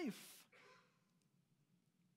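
The end of a spoken word trailing off into a short breathy exhale in about the first half second, then near silence: room tone.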